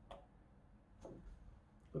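Near silence with two faint clicks about a second apart.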